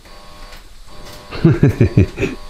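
A man laughing: a quick run of short 'ha-ha' bursts starting about a second and a half in, after a quiet stretch of room tone.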